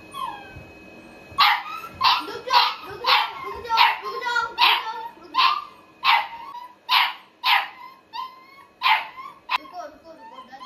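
A puppy barking in a quick series of short, sharp yaps, about a dozen at roughly two a second, starting about a second and a half in.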